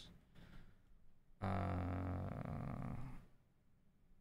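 A man's voice holding a long, level 'uhh' of hesitation for nearly two seconds, starting about a second and a half in; otherwise quiet room tone.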